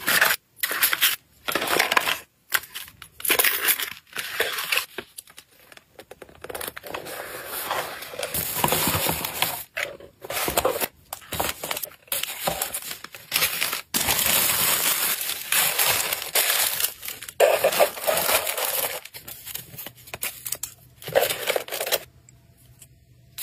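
Kraft paper and cardboard crinkling and rustling in irregular bursts with short pauses, as items are pressed into a cardboard shipping box lined with honeycomb kraft packing paper.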